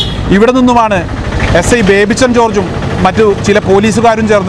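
A man talking in Malayalam, with a vehicle engine running in the background under his voice.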